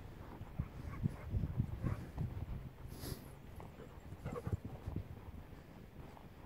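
Walker's footsteps on a grassy path, with jacket fabric rubbing against a phone microphone in a chest pocket: soft, irregular thuds about two a second and a brief hiss about three seconds in.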